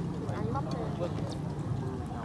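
Faint background chatter of other voices over a steady low hum of street noise, with a few light ticks.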